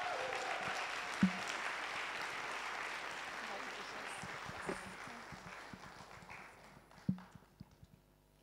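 Audience applauding, dying away over about six seconds, with a couple of short knocks.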